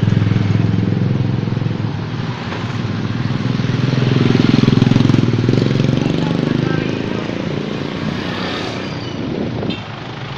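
Small motorcycle engines running close by in slow street traffic. The loudest is a motorized tricycle passing right alongside, swelling about halfway through with its engine pitch dipping and rising, then fading.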